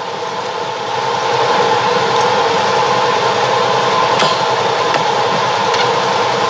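A vehicle engine running: a steady hum with several held tones that gets louder about a second in.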